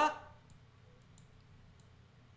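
A few faint, sharp computer mouse clicks, spaced unevenly, over quiet room tone.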